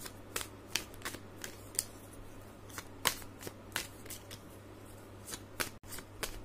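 An oracle card deck being shuffled by hand: quiet, irregular clicks and flicks of cards, roughly two a second.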